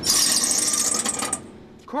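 A mechanic's tool working on a semi-truck, giving a fast ratcheting buzz with a strong hiss for about a second and a half before fading out.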